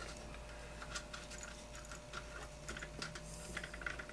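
Faint, irregular small clicks and taps of a screw and metal parts being handled against the chassis while the screw is lined up under the engine mount, over a steady faint hum.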